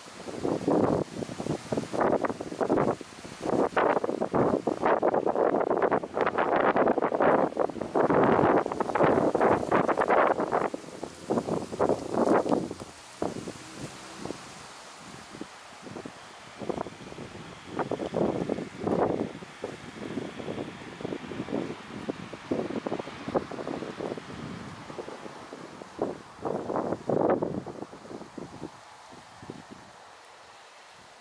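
Gusty outdoor wind noise: irregular rustling in close-packed bursts for the first dozen seconds, then sparser and quieter.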